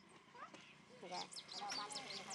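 Indistinct voices, joined in the second half by a quick run of short, high chirps.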